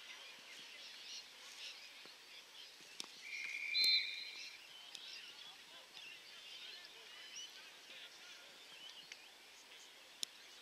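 An umpire's whistle blown once, a steady high tone lasting about a second and a half starting about three seconds in. Faint distant voices and birdsong chirp throughout.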